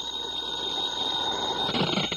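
Telephone bell ringing steadily as a radio-drama sound effect, heard with the hiss of an old transcription recording.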